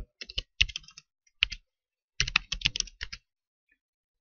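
Typing on a computer keyboard: two short runs of keystrokes, about a second each, with a pause between.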